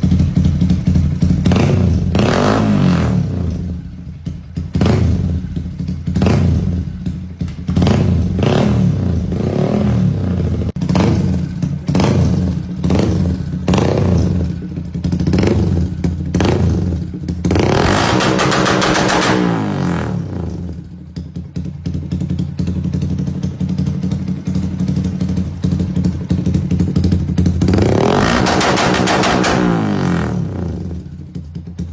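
Motorcycle engine idling while the throttle is blipped over and over in quick short revs, then revved up longer twice, once midway and once near the end.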